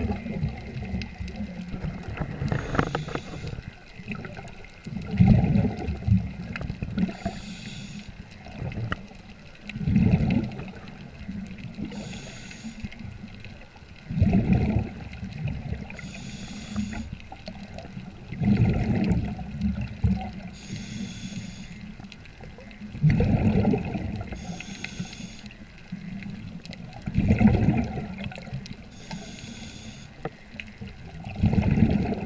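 A swimmer's breathing heard underwater through the camera's housing, in a steady cycle of about one breath every four to five seconds: a loud low surge of water and bubble noise, then a short high hiss, over and over.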